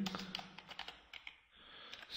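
Computer keyboard being typed on: a quick run of keystrokes that stops a little before the end.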